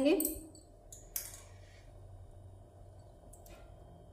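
A few light clicks and taps of small plastic measuring spoons being handled over a steel cooking pot, the plainest about a second in, against quiet room tone.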